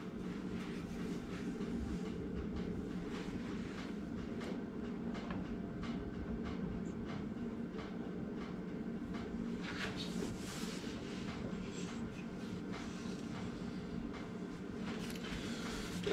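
Steady low machine hum, with a few light knocks and scrapes as the wooden spindle is handled and fitted between the lathe centers, the clearest about ten seconds in.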